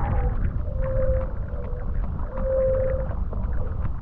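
Heavy wind buffeting an action camera's microphone while wing foiling on open water, with a thin humming whistle that swells twice. Faint splashes of water come through underneath.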